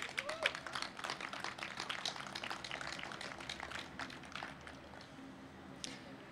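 Scattered applause from the audience, a quick patter of hand claps that thins out and fades away after about four seconds.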